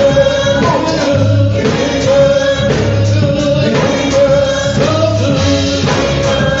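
Gospel worship music: voices singing over instruments, with a deep bass note about every two seconds.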